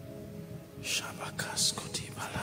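A man whispering a prayer close to a microphone, with hissing s-sounds, begins about a second in over soft, sustained background music.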